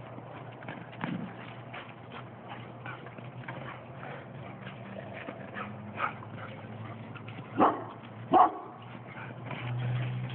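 Dogs playing along a fence, with two loud barks less than a second apart about three-quarters of the way in and a few softer sounds earlier.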